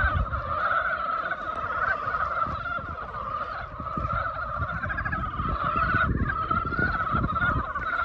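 A dense chorus of many frogs calling at once from a marsh pool, a steady continuous din of overlapping trilling calls.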